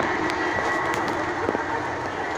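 Garden-scale model train running on its track outdoors, a steady running noise with a few light clicks.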